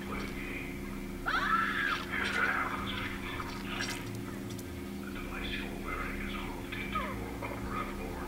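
Soundtrack of a dark, cinematic music-video intro: a low steady drone, with faint voice-like sounds about a second in and again near the end.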